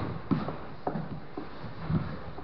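Grapplers' bodies and limbs knocking and scuffing on a training mat during a jiu-jitsu roll: a few soft, scattered thuds, the strongest near the end.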